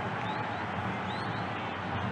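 Steady crowd noise of spectators in a football stadium, an even wash of many distant voices, with a couple of faint high whistles.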